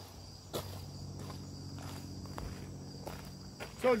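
Steady high-pitched chirring of insects, with a faint low hum beneath it and a single sharp click about half a second in.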